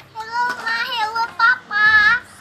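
A toddler girl singing in a high voice: a short sung phrase that breaks off briefly twice and ends on a held, wavering note.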